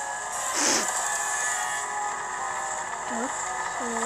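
Cartoon sound effects from a machine: a short falling whoosh about half a second in, then a steady mechanical running noise as the puffing machine comes on.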